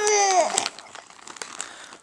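A child's high whining wail that falls in pitch and dies away about half a second in, then the soft crinkling of a plastic potato chip bag being handled.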